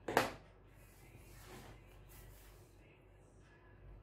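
Scissors cutting out a drafted blouse pattern: one loud, sharp cut right at the start, then softer snips and rustling.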